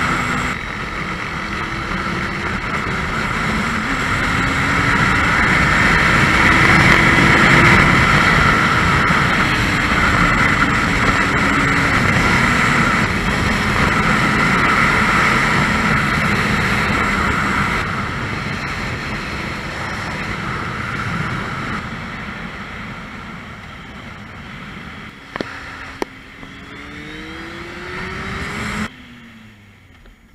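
Motorcycle ridden at highway speed: the engine runs under heavy wind rush on the microphone, its note drifting up and down with the throttle. The sound eases off over the second half as the bike slows, ending with a short rising rev before cutting off suddenly near the end.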